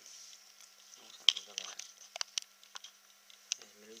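A puppy eating from a ceramic bowl: irregular sharp clicks and crunches of food and bowl, the loudest about a second in.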